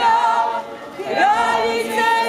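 A procession's group of voices singing a Marian hymn unaccompanied: a long held note, a short break for breath about halfway through, then the voices rising into the next long note.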